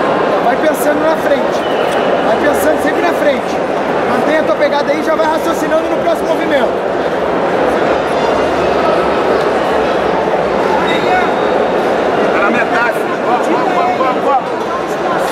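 A crowd of many overlapping voices shouting and talking in a large hall, loud and steady throughout.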